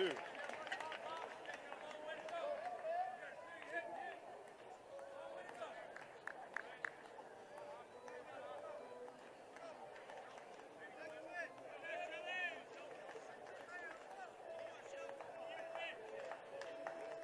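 Ballpark crowd ambience: scattered voices of fans talking and calling out in the stands, with a few short sharp knocks about six to seven seconds in.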